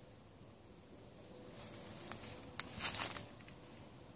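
A few faint footsteps rustling through leafy forest undergrowth, loudest about three seconds in.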